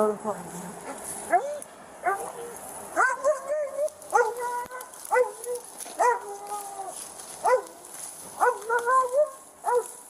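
Police K-9 dog barking repeatedly, one to two barks a second, some of them short and some drawn out into longer, higher yelps.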